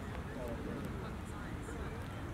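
Faint distant voices of people on a playing field over a steady low rumble.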